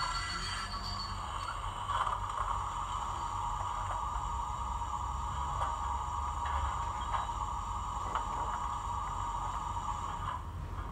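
Recorded Peckett steam locomotive sounds from a Zimo DCC sound decoder, played through the small speaker of an O gauge model locomotive while it stands still. A steady sound with a few light clicks runs throughout, after a pitched tone that cuts off within the first second.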